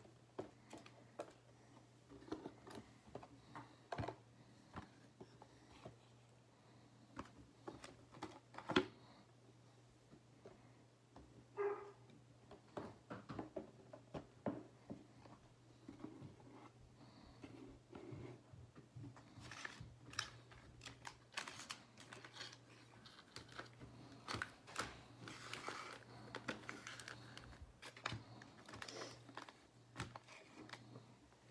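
Cardboard trading-card boxes and plastic-wrapped card packs being handled and set down on a table: scattered light taps and knocks, with rustling that gets busier in the second half, over a faint steady low hum.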